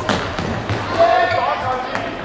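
Football kicked and bouncing on a sports-hall floor, sharp thuds echoing in the hall, mixed with shouts that are loudest about a second in.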